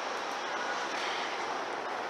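Steady hiss of background noise, even in level throughout, with no speech.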